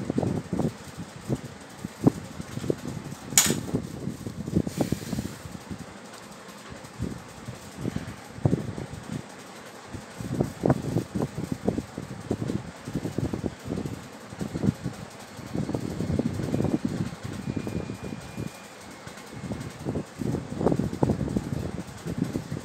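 Irregular rumbling and rustling noise of moving air buffeting the microphone, with one sharp click about three and a half seconds in.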